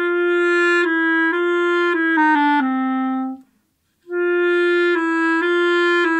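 Solo clarinet playing a slow phrase that steps down by small intervals, then after a short pause starting the same phrase again. The passage is played twice to compare fingerings, and the repeat is played without the alternate (chromatic) fingering, which leaves a little bump in the line.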